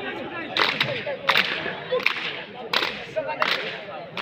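A group of boys doing a PT drill routine, making sharp slaps together in unison, about six strikes at uneven intervals of roughly half a second to a second, over background chatter.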